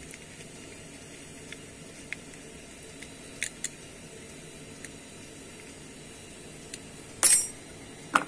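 A few faint small clicks of a screwdriver tightening the screw that holds the heater control board's transistor bracket, then one sharp metallic clink with a brief ring near the end.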